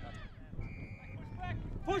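A short, steady whistle blast of about half a second around the middle, amid sideline spectators' shouting that grows loud at the end.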